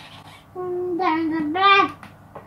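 A singing voice holding a short phrase of a tune, starting about half a second in and rising to its loudest note just before it stops near the end.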